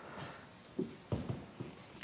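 A few faint, soft footsteps on a stage, heard as low thuds in the second half.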